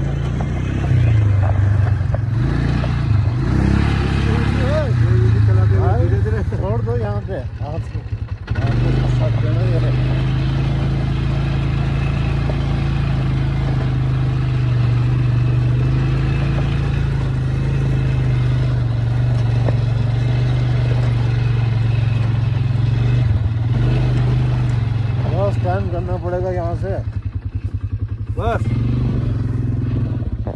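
Engine of a small motor-ride vehicle running steadily under its riders. It drops briefly in revs and loudness about eight seconds in, then picks up again.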